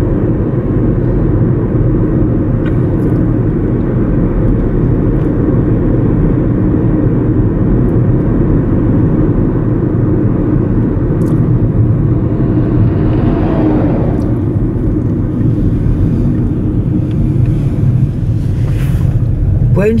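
Steady road and engine noise inside a moving car's cabin at highway speed. About two-thirds of the way through, an oncoming truck passes with a brief swell of noise.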